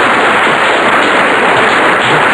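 Studio audience applauding: a dense, steady clatter of many hands clapping.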